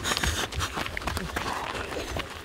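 Quick footfalls of footballers running and high-kneeing through an agility-pole drill on grass: a rapid irregular run of short thuds.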